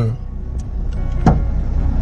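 Low steady rumble in a pause between spoken words, with one brief short sound about a second and a quarter in.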